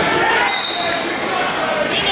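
A referee's whistle, one short steady blast starting the wrestlers from the referee's position, over shouting from coaches and spectators in a gym hall.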